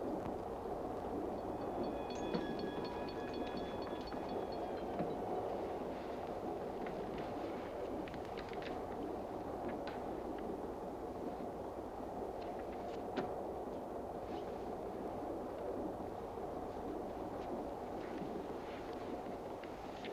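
Passenger train running: a low, steady rumble as heard inside a railway car, with scattered faint clicks. A thin, steady high tone sounds for a few seconds near the start.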